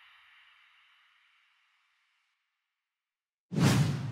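A whoosh sound effect tails off over the first second or two, then near silence, then a second loud whoosh starts suddenly about three and a half seconds in.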